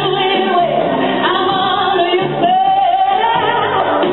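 A woman singing into a microphone over musical accompaniment, holding long notes that bend in pitch, heard through a PA system.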